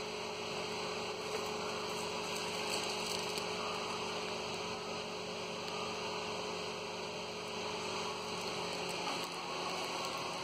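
A steady electrical hum with a faint hiss, with a few light ticks about two to three seconds in.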